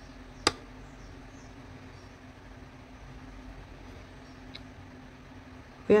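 Steady low room hum, with one sharp click about half a second in and a faint tick later.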